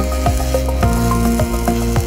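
Background music: held synth chords that change about a second in, over a steady ticking beat of about three to four strikes a second.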